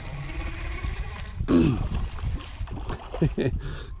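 Brief wordless voice sounds from a man, loudest about a second and a half in and again near the end, over steady low wind-and-water rumble on the microphone.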